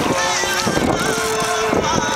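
Several people's voices overlapping, one of them holding a long note about a second in.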